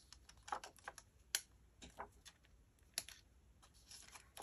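Faint, scattered clicks and light rustles of self-adhesive enamel dots being peeled from their backing sheet and pressed onto a paper card, with a sharper click about a second and a half in and another about three seconds in.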